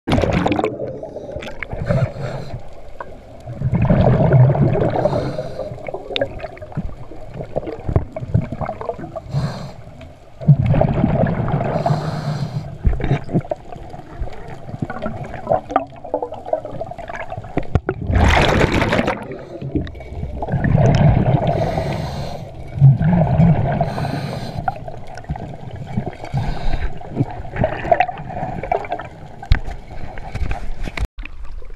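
Scuba regulator breathing heard underwater from a mask-mounted camera: repeated surges of hissing inhales and gurgling, rumbling bursts of exhaled bubbles, a few seconds apart.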